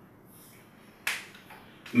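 Quiet room tone with one short, sharp click about a second in.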